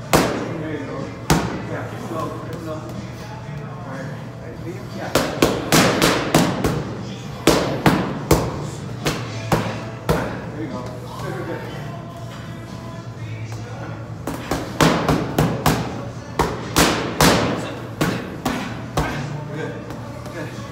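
Boxing gloves hitting focus mitts with sharp smacks: a single punch at the start and another a second later, then fast combinations of several punches, one run in the middle and another near the end, with pauses between. Background music plays steadily underneath.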